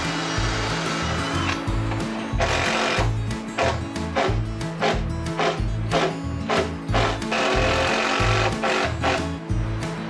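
Cordless drill driving screws in several short runs to fix a bilge pump in place, over background music with a steady beat.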